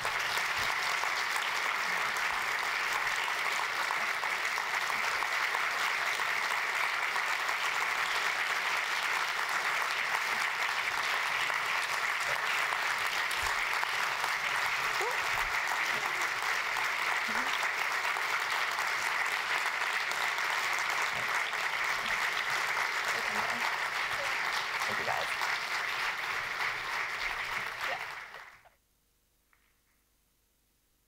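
Audience applauding steadily for about half a minute, then stopping sharply near the end.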